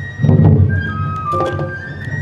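Awa Odori festival music: a bamboo flute plays a stepping melody over a heavy drum stroke about a quarter second in, with sharp clicking strikes near the middle.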